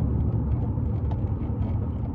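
Steady low rumble of a car on the move, engine and road noise heard from inside the cabin.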